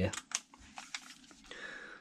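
A few light clicks and taps of small hand tools being handled and put down on a workbench while a cordless screwdriver is picked up.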